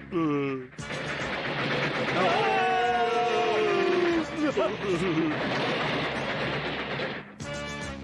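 Cartoon sound effects over music: a quick falling whistle-like glide, then about six seconds of loud crashing rumble with a long falling yell inside it. Laughter comes near the end.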